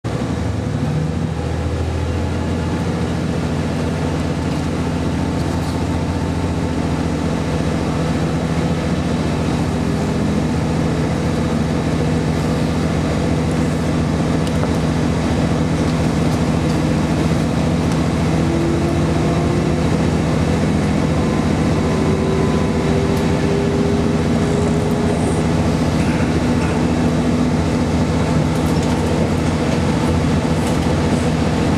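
Cabin sound of a JR KiHa 40 series diesel railcar pulling away and gathering speed: its diesel engine runs under load as a steady low drone, and a whine rises in pitch a little past the middle.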